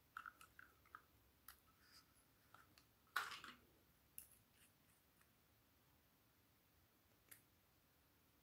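Faint handling noises: scattered light clicks and taps of fingers on small plastic items, with one louder brief rustle about three seconds in.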